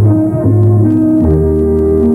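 Orchestra playing the instrumental introduction to a song: sustained chords over a bass line that moves to a new note every half second or so, before the singer comes in.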